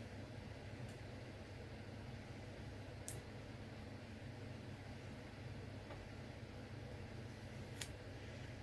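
Quiet room tone: a low steady hum with faint hiss, broken by two small faint clicks, one about three seconds in and one near the end.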